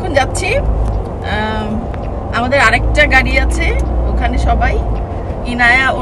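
Low, steady rumble of a car driving, heard from inside the cabin, with a person's voice over it several times.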